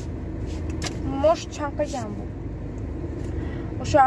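A steady low rumble inside a car cabin, with a drawn-out voice heard over it a little over a second in and again near the end.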